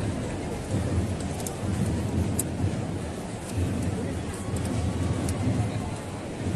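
Large crowd chattering, with wind buffeting the microphone in an irregular low rumble.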